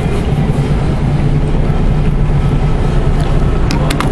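Steady, loud low rumble with a hum running under it, and two sharp clicks close together near the end.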